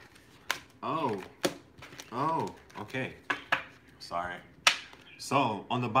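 Tarot cards handled on a table, making a string of sharp clicks and snaps, with short wordless vocal sounds from a man between them.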